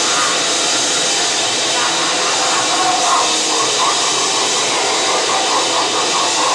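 Grindcore band playing live: a loud, steady wall of distorted noise with shouted vocals.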